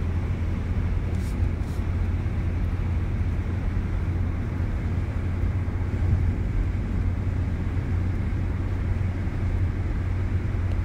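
Steady road and engine noise inside a moving car's cabin: an even low rumble with tyre hiss, without a break.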